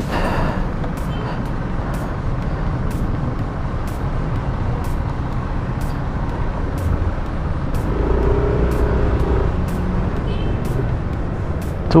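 Yamaha Aerox V2 scooter's single-cylinder engine running at low speed as it moves off, with road traffic around; a louder low rumble about eight seconds in lasts a second or so.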